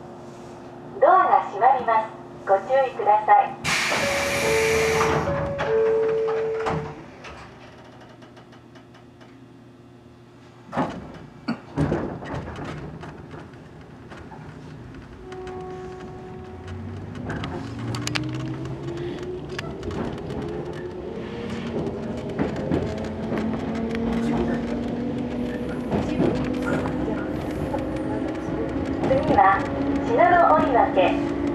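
115-series electric train closing up and pulling away: a loud burst of air hiss with two short tones, a couple of knocks, then a whine from the traction motors that climbs steadily in pitch and grows louder as the train accelerates.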